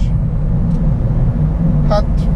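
Steady low engine and road rumble inside a passenger van's cabin while it drives at motorway speed.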